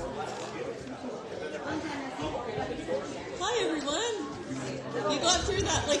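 Indistinct chatter of several people talking at once in a large hall, with one voice standing out more clearly from about halfway through.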